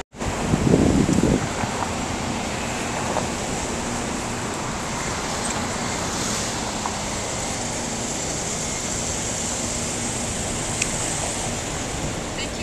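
Steady wind and road noise from riding through city traffic, with a louder burst of noise about a second in.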